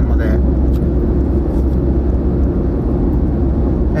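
Steady low rumble of road and engine noise inside a moving car's cabin while cruising on an expressway.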